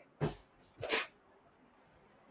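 A man's short breathy laugh: two quick puffs of breath, the second about half a second after the first.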